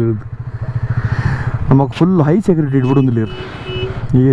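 Motorcycle engine running with wind noise under a man talking. Near the end a steady high beep sounds for about a second.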